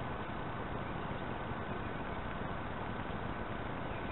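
Steady wind noise on the microphone, with a faint steady high tone running underneath.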